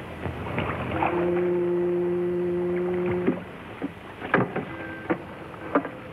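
A ship's horn sounds one long, low, steady blast, starting about a second in and cutting off abruptly after about two seconds. A few sharp knocks follow.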